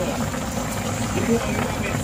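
Pork adobo simmering in a metal pan on the stove, a steady low bubbling hiss, with a brief faint murmur of a voice about a second in.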